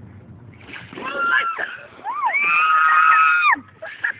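Buckets of ice water dumped over several people, splashing about half a second in, followed by high-pitched shrieks from the people who are soaked; one long held shriek in the second half is the loudest sound.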